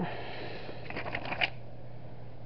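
A paper yearbook page turned by hand: a rustle that starts abruptly, then a few crisp crackles about a second in, the loudest just before it stops at about a second and a half.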